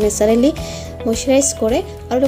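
A woman's voice narrating in a language the recogniser could not follow, over steady background music.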